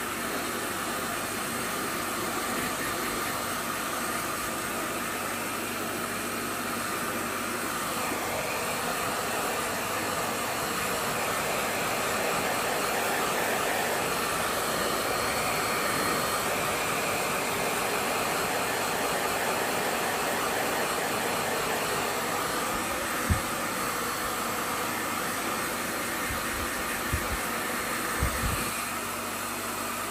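Hair dryer blowing steadily while a freshly bathed puppy's coat is dried. A few soft low bumps come near the end.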